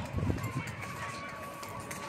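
Indistinct background voices of people outdoors, with footsteps on a sandy path; a few low thuds in the first half second.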